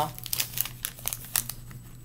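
Plastic snack pouch crinkling as it is handled in the hands: a run of irregular, sharp crackles.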